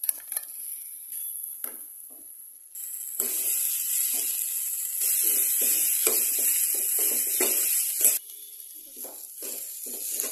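Potato chunks frying in oil and spice paste in a nonstick pan, sizzling while a steel spoon stirs and mashes them, scraping the pan about twice a second. The sizzle grows loud about three seconds in and drops off sharply about eight seconds in, with the stirring strokes going on.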